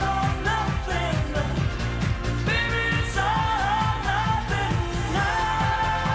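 Live pop-rock band playing a steady drum beat and bass under a sung melody, which holds a long note near the end.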